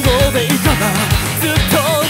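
Rock song with a male lead voice singing with vibrato over a full band and a steady drum beat.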